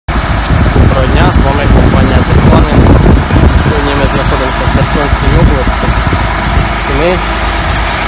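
John Deere 8320R tractor's six-cylinder diesel engine idling steadily, with voices talking over it.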